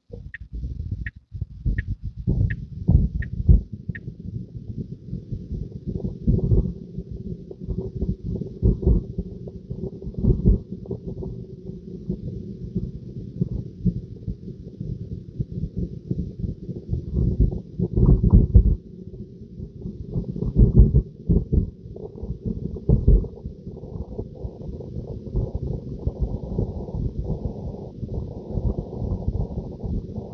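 Tesla Model 3 turn-signal indicator ticking about one and a half times a second, stopping about four seconds in. Under it and on through the rest, low, uneven rumbling of road and tyre noise inside the cabin as the car drives.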